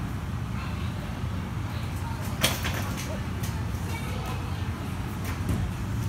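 Steady low background rumble of a large gym hall, broken by one sharp knock about two and a half seconds in, with a few fainter ticks later.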